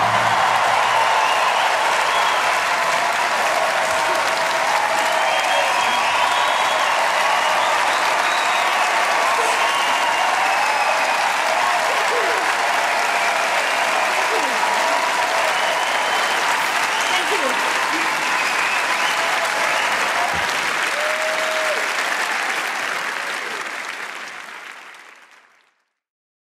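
A large audience in a concert hall applauding at length, with voices calling out over the clapping. The applause fades out near the end.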